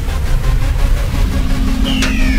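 Loud outro music and sound effects: a heavy low rumble with hiss, joined by a steady low hum a little past halfway.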